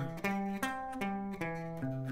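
Clean electric guitar (Telecaster-style) picking a C major arpeggio one note at a time, walking up the chord tones and back down, about four notes a second.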